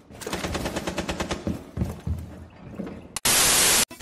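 Rapid video-game gunfire, a dense string of shots in the first second and a half that thins to scattered shots. About three seconds in, a loud burst of static-like hiss lasts just over half a second.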